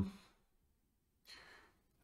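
The tail of a drawn-out 'um' fading out, then, about a second and a half in, a short faint breath from a man at a close microphone.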